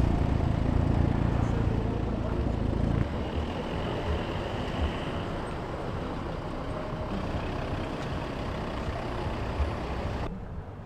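Volvo cars driving slowly past at walking pace, their engines running low with tyre noise on block paving. The engine sound is strong for about three seconds, then drops suddenly to a quieter steady rumble from a Volvo V60 Cross Country D4 diesel creeping past.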